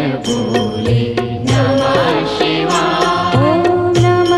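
Indian devotional music: a hand drum struck in a quick, even rhythm under a chanted melody that glides in pitch.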